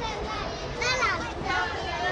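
A crowd of young schoolchildren chattering and calling over one another, with one high child's voice standing out about a second in.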